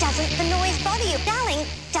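Speedcore breakdown: the dense pounding beat drops out, leaving a steady low bass drone under a pitched, warped sampled voice. The full beat cuts back in right at the end.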